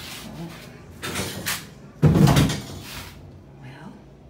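Restroom door being pushed and shut, with a sudden loud bang about two seconds in as it closes.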